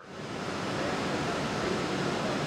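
Steady rushing ambience of a very large indoor pool hall, swelling up over the first half second and then holding level.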